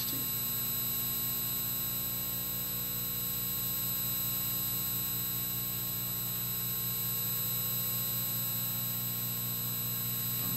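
Steady electrical mains hum with a buzz of several fixed higher tones above it, unchanging in level.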